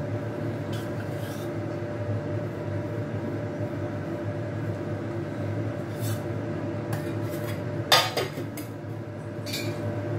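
Metal spoon stirring and scraping in a steel cooking pot, with scattered clinks and one louder, ringing metal clank about eight seconds in. A steady low hum runs underneath.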